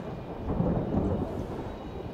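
Low rumble of thunder with rain, swelling about half a second in and slowly easing off.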